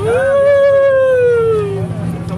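A dog howling: one long howl that rises quickly, holds, then slowly sinks in pitch.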